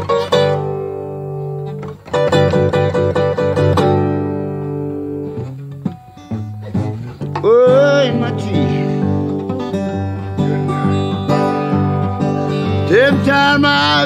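Acoustic blues: a solo acoustic guitar playing an instrumental break, with some notes bending in pitch around the middle and again near the end.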